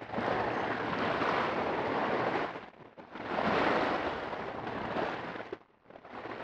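Ocean waves crashing on a beach, played through a tape-saturation distortion and a low-pass filter so that they sound like audio off an old VHS tape. Two washes of surf, each about two and a half seconds long, with a short dip between them.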